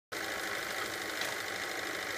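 Max 11 model steam plant's small steam engine running steadily, with a continuous hiss of steam.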